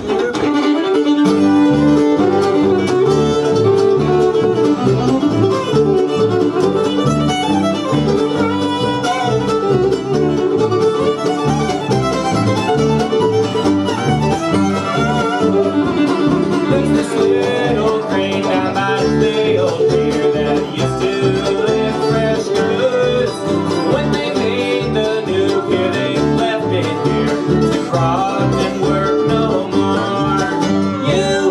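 Live bluegrass band playing an instrumental passage on fiddle, mandolin, acoustic guitar and upright bass, with the bass keeping a steady beat.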